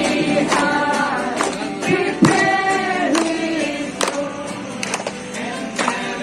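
A group of men and women singing a Christmas song together, with irregular sharp beats among the voices.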